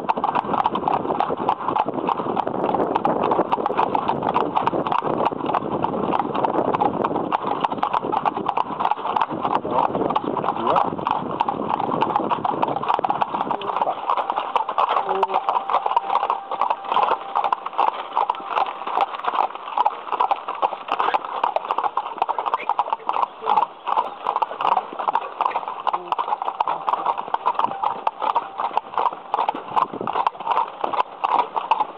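A pair of carriage horses trotting on asphalt, their shod hooves clip-clopping in a steady, fast rhythm. A low rumble lies under the hoofbeats for the first half and then drops away. The driver suspects one of the horses of going slightly lame, though nothing conclusive shows.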